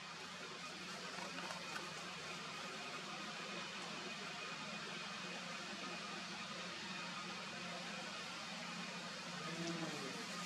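Steady, faint background hiss with a low hum underneath, and no distinct event.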